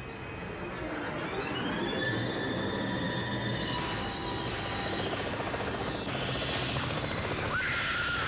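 Soundtrack of an action-style TV commercial: a helicopter with a whine that rises about a second in and then holds steady, mixed with dramatic music.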